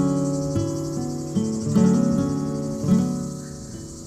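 Background music of plucked acoustic guitar, notes struck and left to ring and die away, over a steady high drone of insects.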